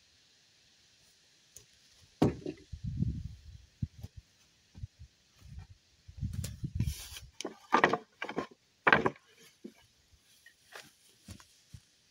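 Wooden lumber boards knocking and clattering as they are handled and set down: an irregular series of knocks and dull thuds, the sharpest about two seconds in and two more in the second half.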